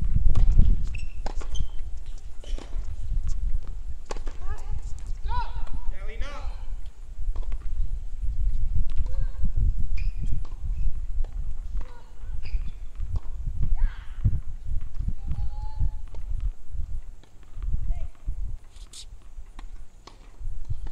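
Outdoor tennis-court ambience: indistinct distant voices over a low, uneven rumble, with scattered sharp knocks of tennis balls bouncing or being struck.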